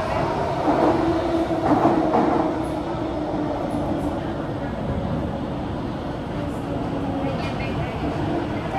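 Steady hum inside a Kawasaki–CRRC Sifang CT251 metro car, with voices early on. Near the end a higher whine of the traction motors comes in as the train begins to move.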